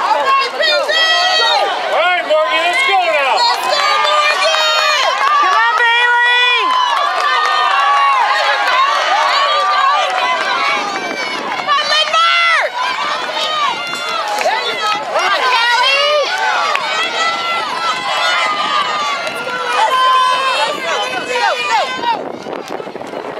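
Spectators and teammates yelling and cheering on runners in a relay race: many overlapping high-pitched shouts, loud and without a break.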